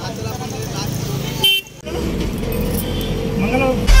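Voices chatting over street and vehicle noise, with a short vehicle horn toot about one and a half seconds in, followed by a brief drop-out. Loud music with a heavy beat starts right at the end.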